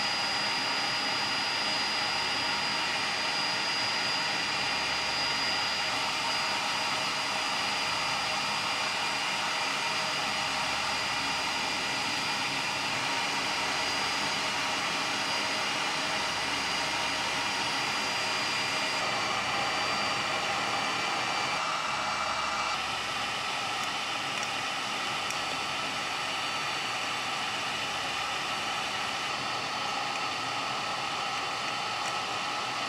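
IKAWA Home hot-air coffee roaster running mid-roast: its fan blows steadily through the roast chamber, keeping the beans swirling, with a high whine on top. About three-quarters of the way through the sound drops slightly and the whine changes pitch.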